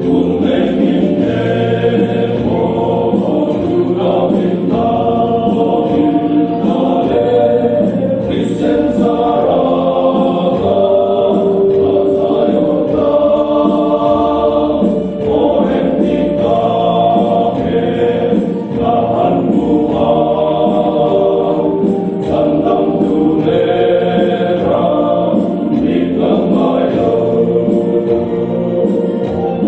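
A group of older men singing a hymn together in Mizo, several voices holding long, sustained notes in harmony, with brief dips for breath.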